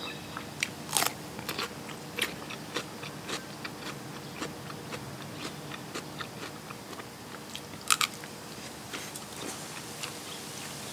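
Crunching and chewing of crisp raw cucumber, with a loud bite about a second in, a quick double crunch near eight seconds, and many small crunches between.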